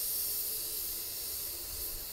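Steady high-pitched hiss of air moving through a spray paint booth.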